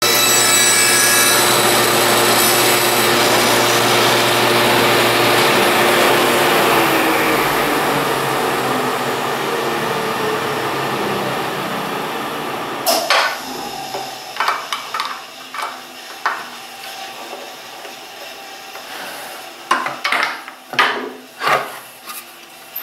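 Table saw running as a plywood block is pushed through the blade, its sound slowly fading over about twelve seconds as the saw winds down. After that, sharp clicks and knocks of a hold-down clamp and plywood being handled on the saw table.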